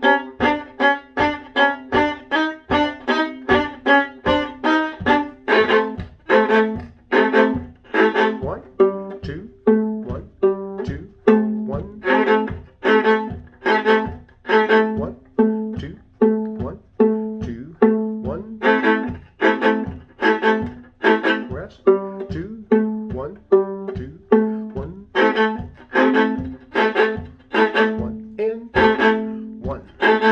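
Viola played solo: short, detached bowed notes with brief gaps between them, about three a second for the first few seconds, then about two a second from around six seconds in.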